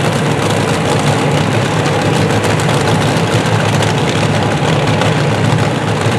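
Injected nitromethane engines of two Top Alcohol dragsters idling at the starting line: a loud, steady, low drone that holds without revving.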